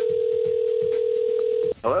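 Telephone ringback tone on an outgoing call: one steady ring lasting about two seconds, which cuts off as the call is answered.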